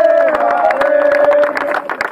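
A group of people singing together in long held notes, with hand clapping throughout.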